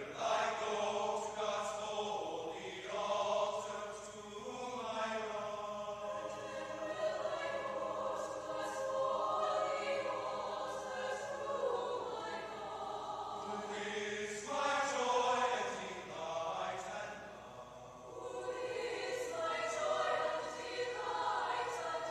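Large mixed choir of men and women singing slow, sustained chords, with a brief dip between phrases about three-quarters of the way through.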